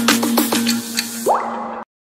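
Logo intro music: a held note under a quick run of plinks that sound like water drips, then a short rising sweep. It cuts off suddenly near the end, leaving silence.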